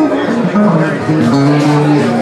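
A woman singing a melody into a microphone, accompanied by an acoustic guitar, in a live performance.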